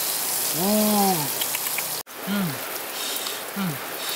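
Steady rushing hiss of running stream water, with a man's wordless hummed "ooh" rising and falling about a second in and short falling grunts later; the sound drops out for an instant about halfway at a cut.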